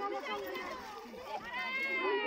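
Women's voices talking over one another, with a higher voice rising near the end.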